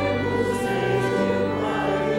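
Church choir singing, holding sustained chords that shift about every half second to a second.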